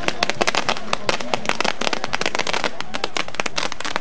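Fireworks tower (castillo) going off: a rapid, irregular string of sharp firecracker bangs, many a second.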